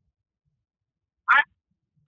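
Near silence, broken about a second and a quarter in by one short spoken syllable, "I", in a pause in speech.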